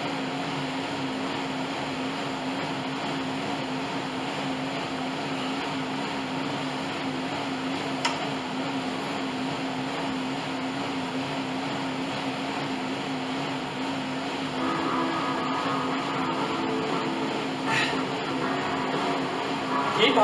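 Bowflex M7 Max Trainer worked hard at a steady pace: a constant whir from its air-resistance fan, with a single sharp click about eight seconds in.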